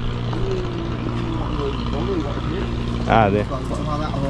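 A steady low hum runs under faint, distant voices. A man says a short 'à' about three seconds in.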